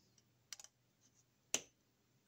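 Small screwdriver clicking against a terminal screw on a plastic thermostat base plate as the screw is tightened down on a wire: a few light clicks about half a second in, then one sharper click about a second and a half in.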